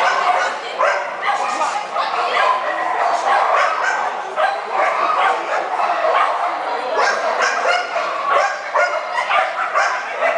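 Dogs barking, one bark after another throughout, over people talking.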